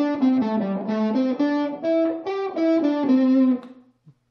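Electric guitar playing a quick run of single notes: a pentatonic scale exercise in groups of notes, shifting up the neck from one scale position to the next. The run stops about three and a half seconds in, with the last note ringing briefly.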